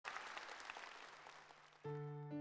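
Audience applause that fades away, then a piano chord starts suddenly near the end as the song's introduction begins.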